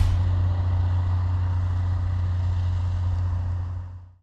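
Snowcat engine running with a steady low drone as the tracked machine comes on through the snow, fading out near the end.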